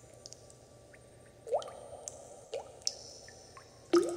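Water drops falling one by one into water, each a short plink rising in pitch, with fainter drips between; the loudest drops land about a second and a half in and just at the end.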